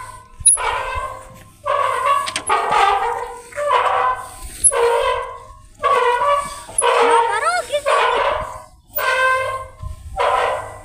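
Rusty metal bench swing squeaking at its hanger pivots as it swings back and forth: a tonal squeal about once a second, in pairs, one on each stroke.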